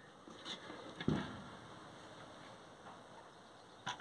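A pumpkin being picked up from a pile and handled: a faint click, then a single dull knock about a second in, and a small click near the end, over quiet room tone.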